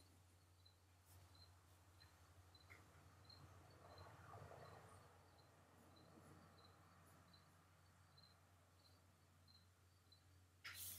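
Near silence: a low steady hum with faint soft scratching of a 7B graphite pencil on paper, a little louder about four seconds in, and a faint high ticking about twice a second.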